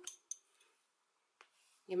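Hands handling yarn and a crochet hook: mostly quiet, with a faint click shortly after the start and another a little past halfway.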